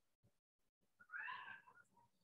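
A single faint, high-pitched call about half a second long, a little over a second in, against near silence.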